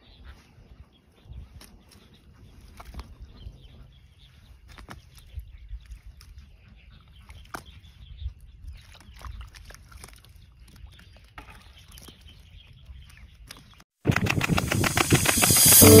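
Faint scattered knocks and crumbling as bare hands break up and dig into dry, cracked mud, over a low rumble. Near the end, loud jazz music with saxophone cuts in suddenly.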